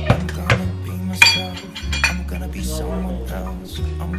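A few sharp clinks and knocks from a metal can being handled and emptied over a large glass drink dispenser. The loudest comes about a second in and rings briefly. Pop music plays throughout.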